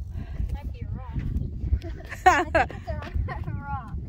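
Raised, high-pitched voices calling out in short bursts, loudest about two seconds in, over a constant low rumble of wind on the microphone.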